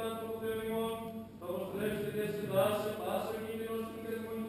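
Byzantine chant of Greek Orthodox vespers: voices singing a slow melodic line over a steady held drone, with the long echo of a church interior.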